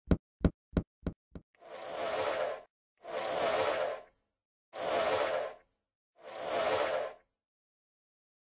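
Logo-animation sound effects: a quick run of knocks, about three a second, dying away in the first second and a half, then four whooshes of about a second each, one after another.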